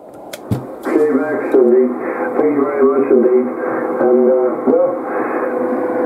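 A man's voice received over a Yaesu FT-450D HF transceiver on the 11 m band, thin and cut off in the treble like single-sideband radio audio, starting about a second in after a couple of sharp clicks.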